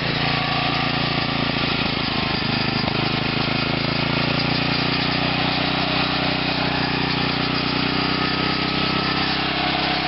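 Small engine with a weedeater carburetor, fed through a homemade plasma-reactor fuel pretreater, running steadily at low throttle with an even, unchanging tone.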